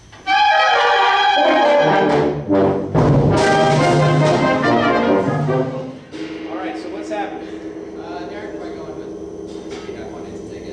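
A concert band plays a loud, brass-heavy passage under a conductor's baton. It stops abruptly about six seconds in, and quieter voices follow.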